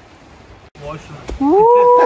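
A person's voice letting out a long, high drawn-out "woooo" call that starts loud about one and a half seconds in, gliding up and then holding its pitch.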